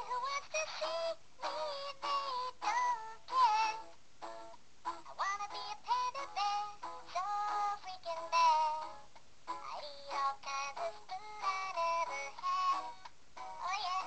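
A song with a very high-pitched singing voice, in short phrases that rise and fall with brief gaps between them.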